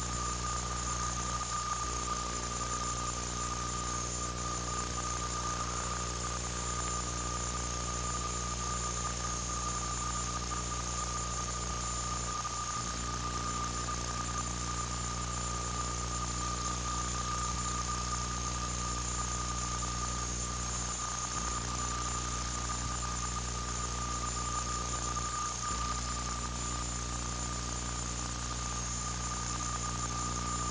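Steady electrical hum and a high-pitched whine over constant hiss, unchanging throughout, with a few brief dips: noise on an old videotape's audio track, with no sound of the game heard.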